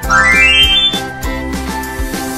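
Cheerful children's background music with a steady beat. Right at the start a bright run of chime notes climbs quickly in pitch over about a second, the pop-up sound of an on-screen subscribe button.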